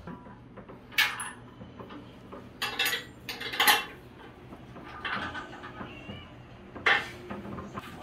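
Metal clinks and clanks from a stainless-steel pressure sterilizer as its lid clamps are loosened and the lid is handled. The clinks are sharp and come singly about a second in, as a quick cluster around the middle, and once more near the end.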